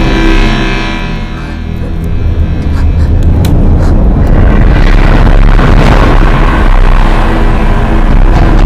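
Dramatic background score, building in loudness with a heavy low rumble and a few sharp hits layered in.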